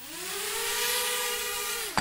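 Micro quadcopter drone's four small motors and propellers whining. The pitch rises as they spin up, holds steady while the drone hovers, then falls away sharply near the end.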